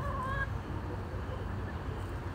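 A hen gives one short call in the first half second, over a steady low rumble.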